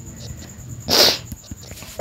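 A single short, sharp, hissing burst of breath from a person, about halfway through, with a few faint ticks after it.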